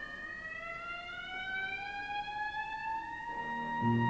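Solo clarinet holding one long note that slowly bends upward in pitch. The band's bass and other instruments come in near the end.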